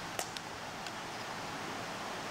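Steady hiss of outdoor background noise, with a faint click just after the start and a couple of fainter ticks.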